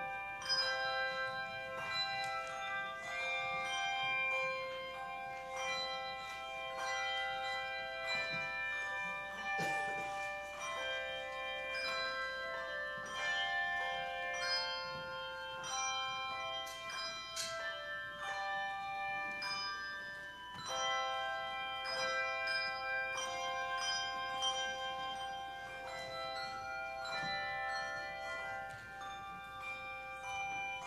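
Handbell choir playing a melodic piece: many struck bells ringing in overlapping notes, each note sounding and slowly fading.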